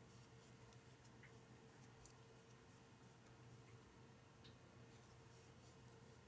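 Near silence: a faint steady hum, with soft scattered ticks and rustles of a crochet hook working cotton yarn into chains and single crochet stitches.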